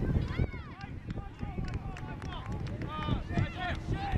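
Several short shouts and calls from players and spectators at a soccer game, over a constant low rumble of wind on the microphone.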